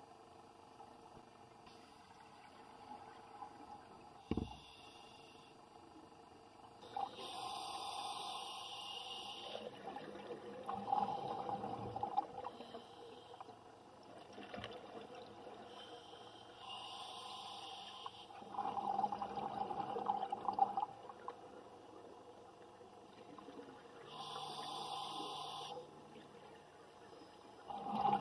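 Scuba diver breathing through a regulator underwater: three rushes of exhaled bubbles about eight seconds apart, with quieter inhalations between them.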